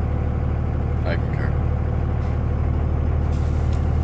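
Steady low rumble of a Dodge Ram pickup truck's engine and road noise, heard from inside the cab while driving.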